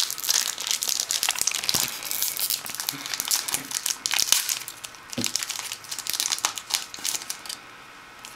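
Foil wrapper of a Yu-Gi-Oh booster pack crinkling irregularly as hands work it and tear it open. The crinkling dies away near the end.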